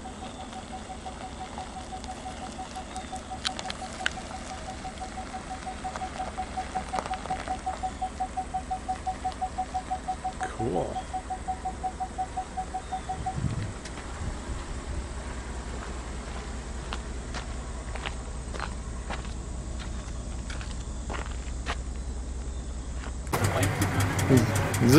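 A 2018 Ford F-150 pickup's engine runs at low speed as the truck moves slowly, with a regular beep of one pitch, several a second, that stops about thirteen seconds in.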